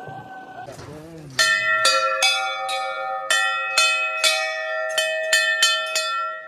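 Hindu temple bell rung repeatedly by hand. Starting about a second and a half in, there are roughly ten strikes in quick, uneven succession, each ringing on into the next.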